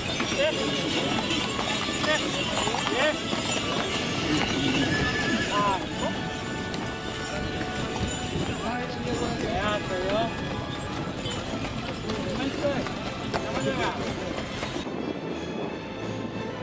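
Hooves of a carriage-horse team clip-clopping on a dirt track, with voices and music mixed in, cutting off near the end.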